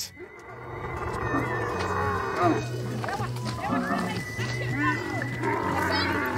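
Dromedary camel bellowing while being chased, heard over background music with a low repeating bass pattern and a held high note, and a short shout partway through.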